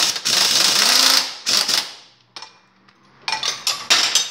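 Cordless drill driving a socket to back out a quad bike's engine-mount bolt: it runs with a brief pause just after the start, stops about a second in, then gives one short final burst. A few sharp knocks near the end.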